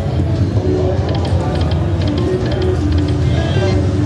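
Buffalo Gold slot machine playing its electronic reel-spin music of held tones over a low casino-floor hum, with short high chimes several times as the spin goes on and the reels stop.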